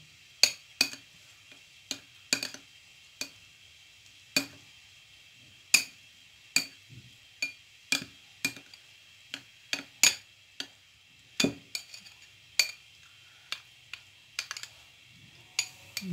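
Metal spoon clinking against small glass bowls while stirring food colouring into boiled rice: sharp, irregular clinks, roughly one or two a second.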